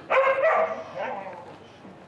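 A short, loud voiced call of about half a second, followed by a fainter one about a second in.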